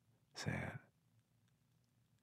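One short, breathy sigh from a person's voice, about half a second in.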